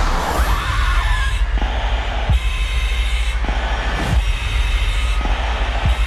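Trailer sound design: a steady low rumble under a string of about six heavy hits, roughly one a second, with a rushing noise cutting in and out between them.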